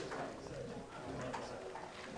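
Quiet room tone in a pause between speech, with a few faint, distant murmurs.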